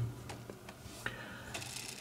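A few faint, light clicks and taps as hands handle a plastic pin tray holding small brass lock parts on a desk.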